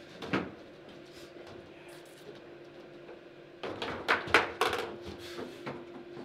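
Table football in play: sharp knocks of the ball against the plastic players and the table walls, and the rods clattering in their bearings. One knock comes just after the start, then a quick flurry of hard knocks about four seconds in.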